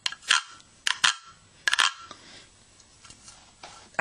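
Toy pig rasp: the snake-shaped stick that comes with it is scraped along the pig's back in a few quick rasping strokes in the first two seconds, then twice more faintly near the end. It is meant to sound like oinking, or like a frog croaking.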